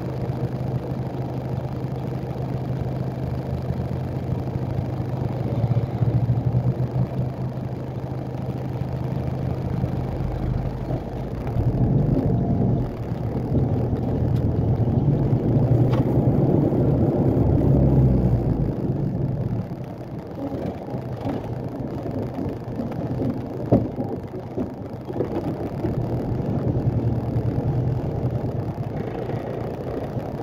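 Heavy truck's diesel engine running, heard from inside the cab while driving: a steady drone that grows louder about eleven seconds in for several seconds, then drops back to a quieter run. A single sharp click comes about two-thirds of the way through.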